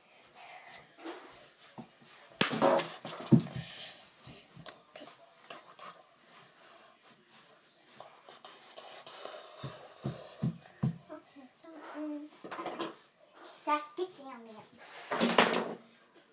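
Knocks and bumps close to the microphone, one loud knock about two and a half seconds in, with a few short, indistinct voice sounds and breathing.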